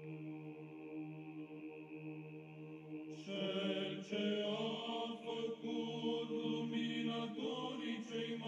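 Chanting voices: a single note held as a steady drone, joined about three seconds in by voices singing a moving melody over it.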